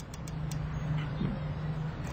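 A steady low hum with a low rumble underneath, in a pause between spoken phrases; the hum stops just before the end.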